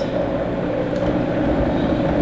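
Vitamix blender running steadily on low speed, an even motor hum.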